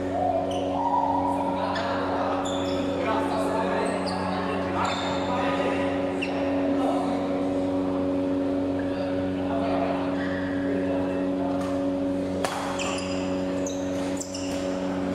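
Badminton hall sound: rackets striking shuttlecocks and shoes squeaking on the court mats in scattered sharp hits and short squeaks, over a steady hum and players' voices in the echoing hall.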